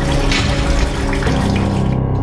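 Water running from a tap into a bucket, over background music. The water sound stops just before the end, leaving the music.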